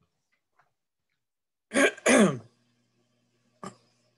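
A person clearing their throat: two short, loud, rough bursts about two seconds in, the second falling in pitch. A faint click follows near the end.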